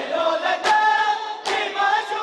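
A group of mourners chanting a noha, a mourning lament, in unison, with rhythmic matam. Matam is chest-beating with open hands, heard here as sharp slaps a little under a second apart, three in these two seconds.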